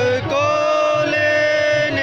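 A man's voice chanting a devotional chant into a microphone, amplified over a PA. After a short breath near the start he holds one long, steady note.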